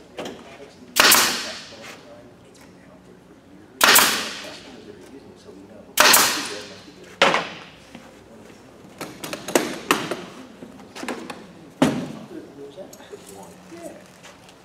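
Pneumatic pin nailer firing three times, about a second in, near four seconds and near six seconds, driving pins into MDF panels; each shot is a sharp crack with a fading hiss after it. Lighter knocks and clatter follow in the second half.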